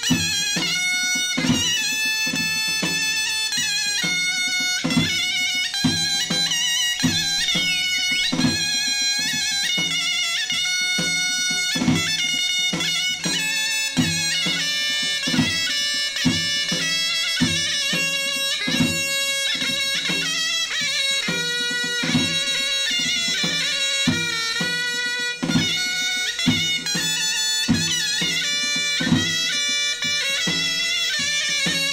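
Bulgarian Pirin folk dance music: a shrill reed wind melody over a steady drone, with a regular drum beat.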